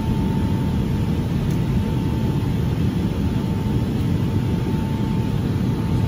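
Jet airliner cabin noise in cruise flight: a steady low rumble and rush of engine and air noise, with a thin steady whine above it.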